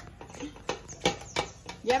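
A few light metallic knocks and clinks of a steel colander and potato masher against an aluminium pot, about four separate knocks, as the colander of cooked plantain is set in place for mashing.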